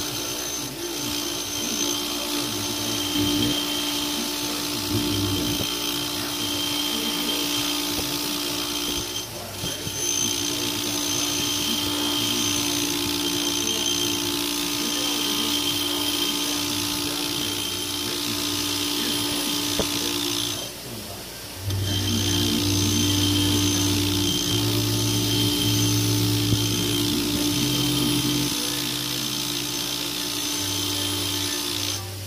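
Delta bench grinder running with a wire wheel, a steady motor whine with the scratchy brushing of a steel head bolt's threads held against the wheel. The wheel is cleaning rust and junk out of the threads so the bolt will torque properly. The sound dips briefly about two-thirds of the way through.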